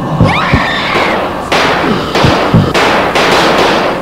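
Horror-film sound effects: several deep booming hits, high gliding sounds in the first second, then loud harsh bursts of noise from about a second and a half in that cut off at the end.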